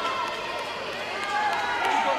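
Many overlapping voices shouting and calling out indistinctly: coaches and spectators shouting during a kickboxing bout.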